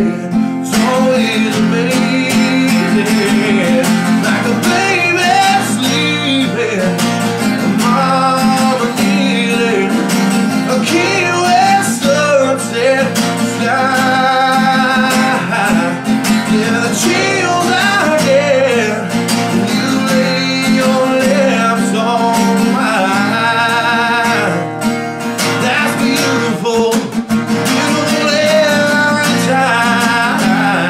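A man singing a country ballad while strumming a steel-string acoustic guitar, the voice wavering with vibrato over steady chords.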